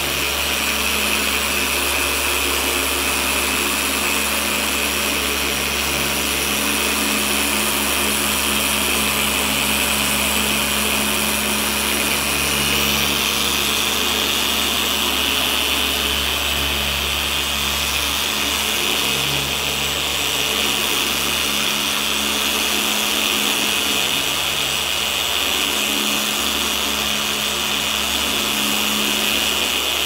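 Electric machine polisher with a yellow foam cutting pad running steadily on a car's painted hood, polishing out sanding marks. It makes a continuous motor hum, and its high whine grows louder about 13 seconds in.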